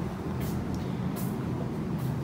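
A steady low rumble, with two brief scuffing noises about half a second and a second in.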